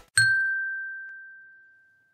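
A single bell-like ding, a clear high tone struck once just after the start that rings and fades away over about a second and a half.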